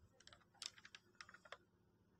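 Near silence broken by a run of faint, quick clicks, about a dozen in the first second and a half.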